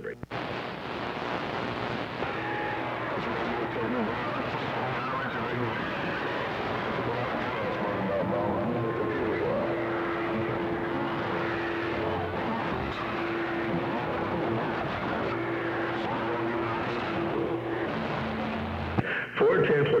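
CB radio receiving on channel 6 (27.025 MHz): a steady hiss of band static with faint, garbled distant voices under it, and a steady low whistle from a heterodyning carrier through the middle stretch.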